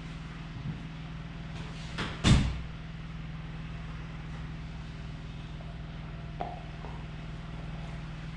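A steady low hum, broken by one loud thud a little over two seconds in and a couple of faint knocks later.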